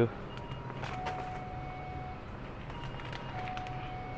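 Shop room tone: a steady low hum with a few faint, held tones at different pitches coming and going. Light crinkles come from a plastic chip bag being handled.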